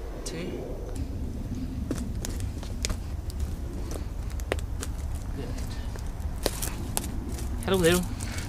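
Footsteps and rustles on a wood-chip garden path, with scattered small clicks and crackles over a steady low rumble. A man's voice begins near the end.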